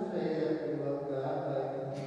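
A man's voice intoning a liturgical chant, holding long steady notes and stepping down to a lower sustained note about half a second in.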